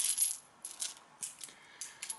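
UK one-penny coins clinking against one another as a hand slides and spreads them across a towel: a cluster of light metallic clinks at the start, then a few scattered smaller clinks.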